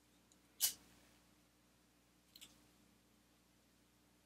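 A cigarette lighter struck: a short sharp rasp about half a second in, then a fainter double rasp near the middle.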